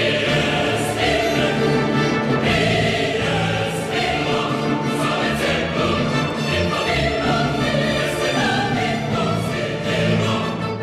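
Choral music: a choir singing long, held notes.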